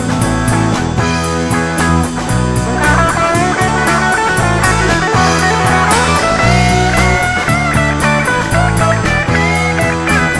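Rock band playing an instrumental break, with no singing: bass and a steady drum beat under a lead guitar line with bent, sliding notes from about three seconds in.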